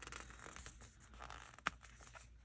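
Faint rustling of paper sticker sheets being handled and shifted, with a single sharp tick a little past halfway.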